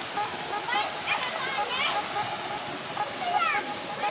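Water rushing steadily down a small rock cascade into a swimming pool in a stream, with short shouts and voices breaking in over it several times.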